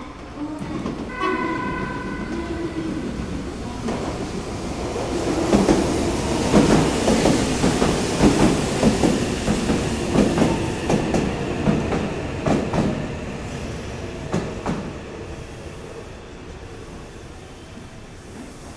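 Meitetsu 2000 series μSKY electric multiple unit arriving: a short horn blast about a second in, then the wheels clatter over rail joints and points, loudest as the cars run past and fading as the train slows to a stop.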